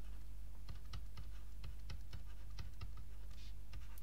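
Faint, irregular light clicks and taps of a stylus on a writing surface as words are handwritten, over a steady low hum.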